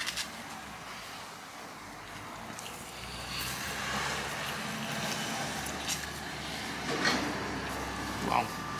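A vehicle engine running, a low steady rumble that swells about three seconds in and holds, with a couple of short clicks near the end.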